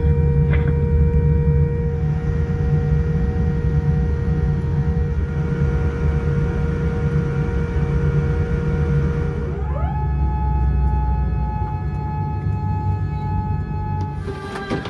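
Boeing 787-9 cabin noise while taxiing: a steady low rumble with a constant whine. About ten seconds in, the whine rises in pitch and holds at a higher note.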